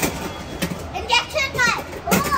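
Children's voices talking and calling out over a busy background of other children, with a run of high-pitched child speech in the second half.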